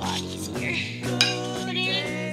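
Background music with long held notes, over the clink and scrape of a cup crushing chocolate graham crackers into crumbs in a bowl, with a few sharp clicks.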